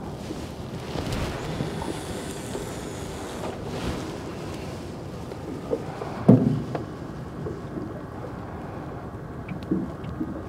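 Wind noise on the microphone over open water, with a rod being cast and line running off a baitcasting reel in the first few seconds. A single sharp knock about six seconds in, with a few smaller clicks around it.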